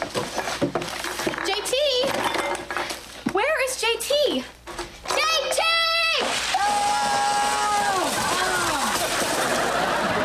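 Short wordless voice sounds, then one long high held cry, with a sitcom studio audience breaking into laughter about six and a half seconds in and laughing on.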